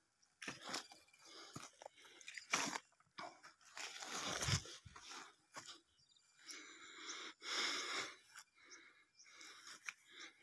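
Irregular crunching and scraping on dry ground, with louder stretches about four seconds in and again near eight seconds.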